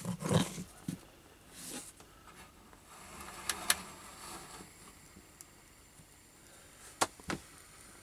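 A few faint, sharp clicks and taps from the vintage spirit stove and its valve rod being handled, with two near the middle and two more near the end.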